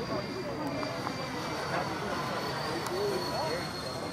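Four electric ducted fans of a Freewing AL-37 RC model airliner in flight, making a steady high whine that eases slightly lower in pitch, with faint spectator chatter underneath.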